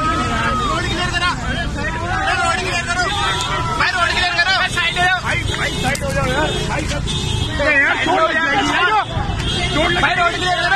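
A dense crowd shouting and calling out over each other, many voices at once with some high-pitched yells, over a steady low rumble.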